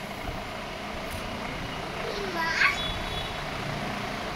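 Steady mechanical rumble in the background, with a young child's brief rising vocal sound about two and a half seconds in.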